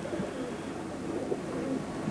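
Racing pigeons cooing quietly in their loft.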